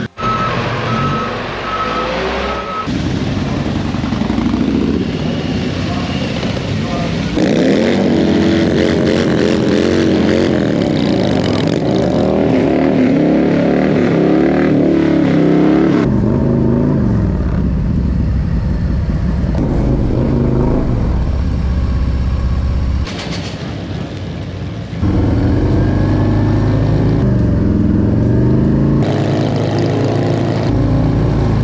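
A tractor's reversing beeper sounds for the first few seconds. Then Harley-Davidson Milwaukee-Eight V-twin engines run and rev through a tire-smoking burnout and a drag-strip launch, heard in several short cuts.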